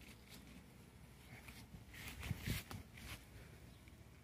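Faint rustling of leaves handled by a gloved hand, with a louder patch of rustling and handling noise about two seconds in.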